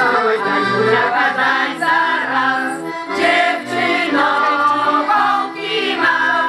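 Polish folk song sung by a group of women's voices together, over instrumental accompaniment with low notes in a regular beat, played for dancing.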